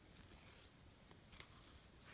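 Near silence, with faint handling of yarn being pulled tight around a plastic pom pom maker and one soft tick near the end.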